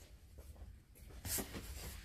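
Faint rustling and scraping of small cardboard product boxes and blister packs being shifted about inside a cardboard shipping box, with a brief louder rustle a little after the middle.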